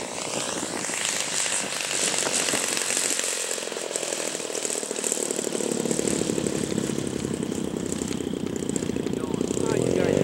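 85cc two-stroke gas engine of a large Hangar 9 Sukhoi RC aerobatic plane running at low throttle as the plane lands and taxis. It is a steady buzz that grows louder as the plane comes closer over the second half.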